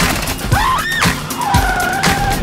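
Music with a heavy, steady beat of about two hits a second, over a car's tyres squealing twice: a short rising squeal about half a second in and a longer, lower one near the end.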